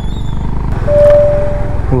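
Honda H'ness CB350's single-cylinder engine running at road speed, a steady low rumble. A single steady beep-like tone sounds for about a second near the middle.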